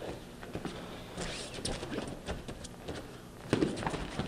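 Wrestling shoes scuffing and stepping on a foam grappling mat as one man shoots in on another, then a heavy thump near the end as both bodies hit the mat in the leg-hook takedown.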